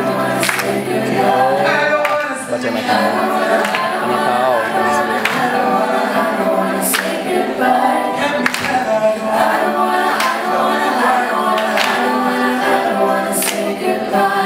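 Live unaccompanied singing, several voices together, with a sharp hit about every second and a half keeping time.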